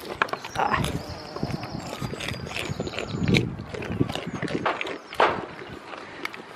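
Irregular knocking and clattering of goats' hooves against wooden fence boards, with a few louder bursts in between.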